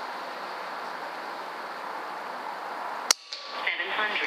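A single sharp shot from an Umarex Notos .22 PCP air pistol about three seconds in, after a steady background hiss that cuts off with the shot.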